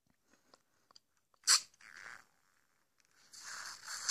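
Hot tea being sucked up through a Tim Tam biscuit used as a straw: a short sharp slurp about a second and a half in, a softer sucking sound just after, and a longer slurp near the end.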